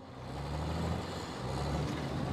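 Street traffic: motor vehicle engines running with a steady low hum and road noise, fading in from silence and growing slightly louder over the first second.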